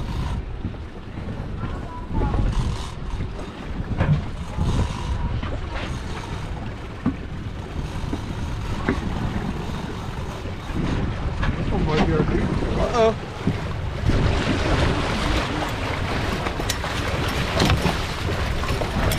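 Wind buffeting the microphone over boat and sea-water noise while a hooked striped bass is reeled to the boat. Over the last few seconds comes splashing as the fish thrashes at the surface and is netted.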